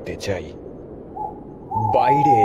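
Hooting sound effect, like an owl: a short hoot about a second in, then a longer one near the end that drops a little in pitch.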